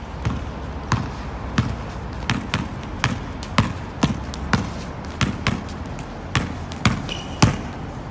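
A basketball dribbled on a hard tiled floor: about fourteen sharp bounces, roughly two a second and unevenly spaced, the last one the loudest.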